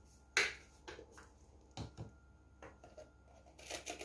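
A few sharp clicks and knocks from handling a plastic ketchup squeeze bottle and other things on a kitchen stovetop, the loudest about a third of a second in and a short cluster near the end.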